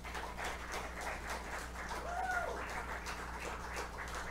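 Scattered clapping from a small audience, with one short rising-and-falling call about two seconds in.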